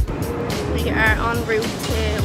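Street sound with wind rumbling on the microphone and traffic going by, and short bits of a woman's voice about a second in.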